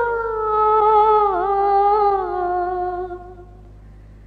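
A woman's voice holds one long unaccompanied note of a naat, its pitch sliding slowly downward with a slight waver, then fading out near the end.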